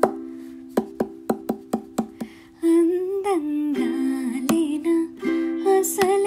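A ukulele: one strum that rings and fades, then a run of about eight single plucked notes. About halfway through, a woman's voice comes in singing a Telugu film song over the ukulele.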